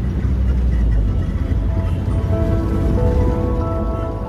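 Low rumble of a moving road vehicle heard from inside its cabin, with soft background music of held notes coming in about halfway through.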